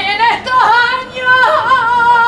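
A woman singing a saeta unaccompanied: a flamenco-style line of wavering, bending notes with melismatic ornaments, broken twice by brief pauses, settling into a long held note near the end.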